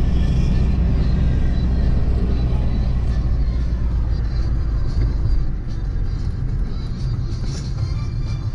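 Background music over the steady low drone of a car driving, heard from inside the cabin.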